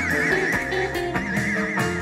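Live rock band playing, with an electric guitar holding a high note with a wide, even vibrato over the rhythm guitar and drums.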